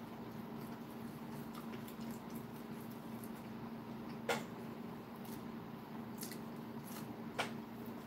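Faint chewing and wet mouth sounds from eating a ketchup-dipped fish stick, with two sharp clicks about four and seven seconds in, over a steady hum.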